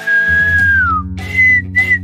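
A person whistling a short, carefree tune: one long note that slides down, then two short higher notes. Background music plays underneath.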